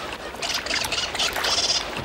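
Water splashing and sloshing, with several brief, bright high-pitched bursts on top.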